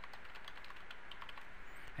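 Faint computer keyboard typing: a quick, irregular run of key clicks as a word is typed.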